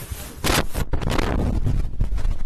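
Wind buffeting the microphone: a loud, low rumbling noise that surges about half a second in.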